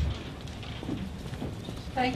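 A low thump at the very start, then faint scattered taps and knocks over steady room noise.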